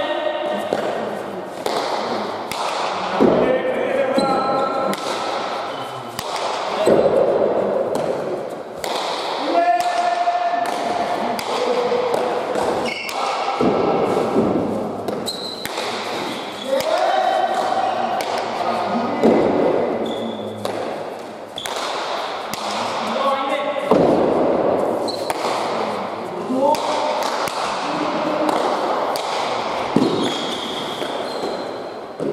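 Pelota ball being struck and hitting the walls and floor of an indoor pelota court, a string of sharp knocks every second or two, each ringing on in the hall.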